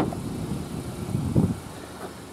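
A car door being opened by hand: a sharp click of the door latch at the start, then low rustling handling noise as the door swings open.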